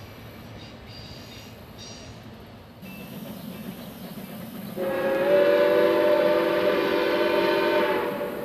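A locomotive whistle sounds one long blast, a chord of several steady notes, starting suddenly about five seconds in and held for about three seconds. Before it there is only a faint background rumble.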